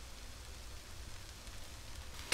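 Cabbage and onions frying in oil and rendered beef fat in a skillet: a faint, steady sizzle.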